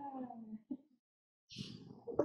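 A short voiced sound falling in pitch as laughter dies away, then a brief hiss of breath.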